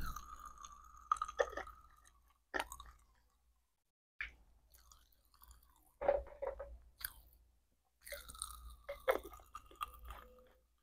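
Plastic-gloved hands handling small plastic spray bottles and their pump tops: a drawn-out squeak of glove rubbing on plastic at the start and again near the end, with sharp clicks and crinkly rustles as the parts are twisted and set down in between.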